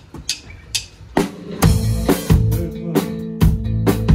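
Live rock band with electric guitar and drum kit starting a song: a few sharp clicks in an even beat, then about a second in the full band comes in with guitar chords and steady drum hits.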